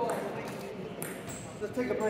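A table tennis ball clicks once on a hard surface about a second in, among voices in a sports hall.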